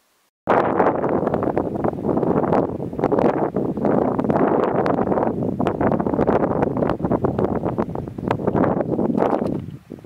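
Wind buffeting the camera's microphone: a loud, rough rush with crackling gusts that starts abruptly about half a second in and dies away near the end.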